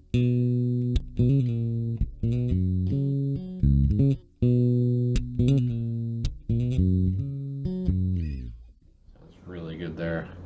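Five-string Warwick Thumb active bass played through a Sushi Box FX Dr. Wattson preamp pedal, a Hiwatt DR103-style bass preamp. The pedal is set for a modern tone with the mids scooped, treble and bass boosted and a little gain. It plays a phrase of sustained notes that stops about eight and a half seconds in.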